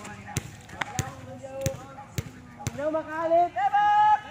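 Volleyball smacks on an outdoor court: about five sharp separate impacts in the first three seconds, then players' voices shouting and calling over the last second or so.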